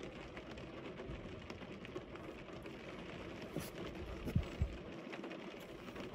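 Low car-cabin background noise: a steady hiss with small clicks and rustles from people moving in their seats, and two short low thumps a little past halfway.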